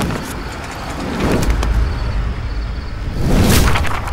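Cinematic sound-effects soundtrack for a projection-mapping show: a deep rumble with two swelling whooshes, one about a second in and a louder one near the end.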